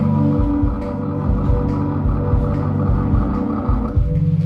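Live band music: a held keyboard chord over a pulsing low end, the chord changing right at the end.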